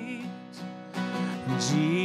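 A man singing a hymn over acoustic guitar strumming; one sung note ends early on, and a new phrase begins with a rising, wavering note about one and a half seconds in.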